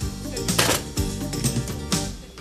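Music playing from a tabletop radio, with a steady beat.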